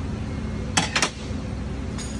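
Two sharp metallic clicks in quick succession near the middle, a steel crescent wrench being handled, over a steady low hum.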